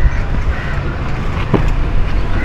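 Steady low rumble of wind buffeting an outdoor microphone, with one sharp knock about one and a half seconds in.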